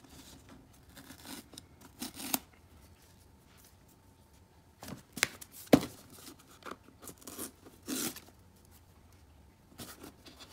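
Cardboard box handled and opened by hand: fingers scratching and picking at a sticker seal tab, with scattered scrapes and sharp taps of cardboard. The sharpest tap comes just before six seconds in, and there is a quiet stretch from about two and a half to five seconds.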